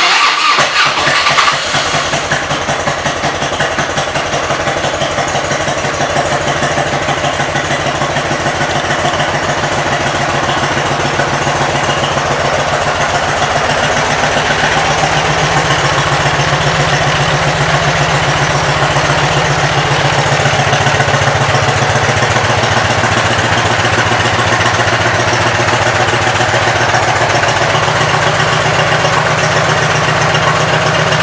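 1998 Harley-Davidson Electra Glide Classic's 1340 cc Evolution V-twin starting and settling into a steady idle. The first second and a half is rougher and louder as it catches.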